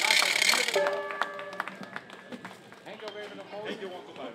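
Clapping and applause from a small outdoor crowd, dying away over the first couple of seconds, with a short held musical note about a second in; low crowd voices follow.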